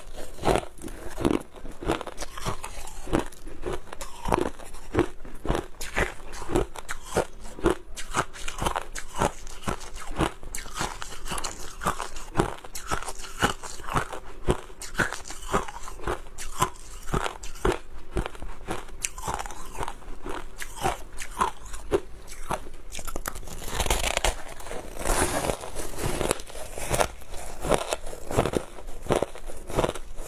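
Close-miked crunching of packed crushed ice being bitten and chewed: a rapid, unbroken run of sharp, crisp cracks, growing denser and hissier for a couple of seconds near 24 s.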